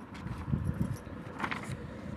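Paper rustling and handling noise as a textbook's pages are moved and turned under a hand-held phone, with irregular low bumps and a short crisp rustle about one and a half seconds in.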